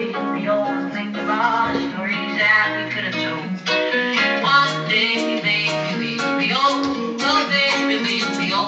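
A recorded pop song with strummed acoustic guitar and a singing voice, playing steadily from the living-room TV.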